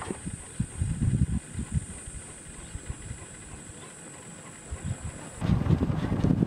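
Wind buffeting the microphone in irregular low gusts, much stronger near the end. Under it, a steady high-pitched drone cuts off suddenly about five seconds in.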